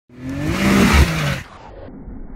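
A vehicle engine revving hard for about a second and a half, its pitch sliding up and down, then cutting off, followed by a much quieter low rumble.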